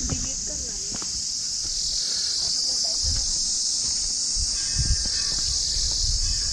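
A steady, high-pitched chorus of insects droning without a break, with a few low thumps underneath.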